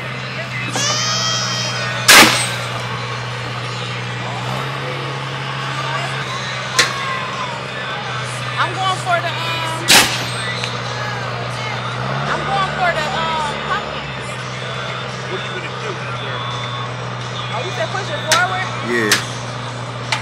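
Compressed-air apple cannon firing twice, loud sharp blasts about two seconds in and again about ten seconds in, with a few smaller clicks between, over a steady low hum.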